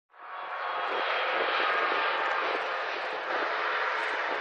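Steady jet engine noise from an IndiGo Airbus A320neo-family airliner on its landing roll, fading in from silence at the start.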